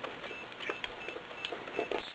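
Silicone spatula stirring a thickening starch bioplastic mixture in a pot over heat, with faint irregular ticks and squelches as the paste turns to gel.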